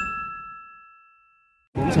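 Bright chime of a logo sting, a few clear tones ringing on and slowly fading while the tail of a low whoosh dies away over the first second. The chime cuts off near the end, when outdoor interview sound and a man's voice come in.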